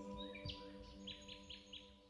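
Fading ambient music of long held, bowl-like tones. About half a second in, a small bird gives a quick run of short chirps.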